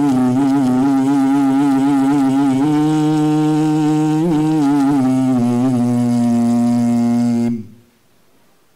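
A man's voice reciting the Qur'an in melodic tilawah style, drawing out one long held vowel over a single breath, its pitch wavering in small ornamental turns and shifting step to step. The note breaks off suddenly near the end.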